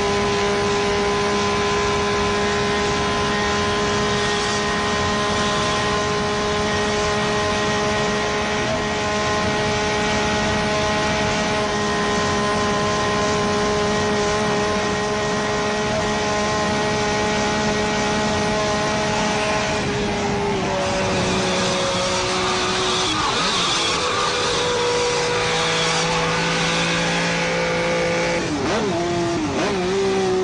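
A car engine at high revs at speed, holding one steady pitch for the first two-thirds. About twenty seconds in the pitch drops as the car slows, then the revs rise and fall through gear changes, with a sharp dip and climb near the end.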